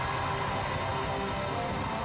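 Live rock band music at the close of a song: sustained held notes over a steady noisy wash.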